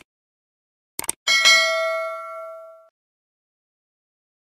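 Subscribe-button animation sound effect: two quick mouse clicks about a second in, then a bright notification bell ding that rings and fades over about a second and a half.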